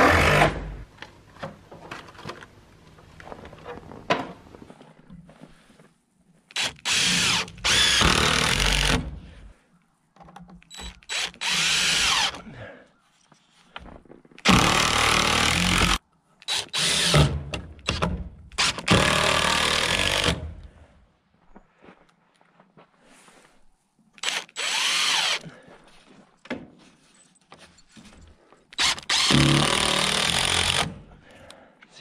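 DeWalt cordless drill/driver driving screws into pine framing lumber, in a series of short runs one to two seconds long with pauses between.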